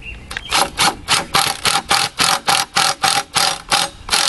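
Makita cordless impact driver hammering a Tapcon masonry screw through a steel bracket into brick, starting about half a second in. It comes as a quick train of rattling pulses, about four or five a second, over the motor's whine.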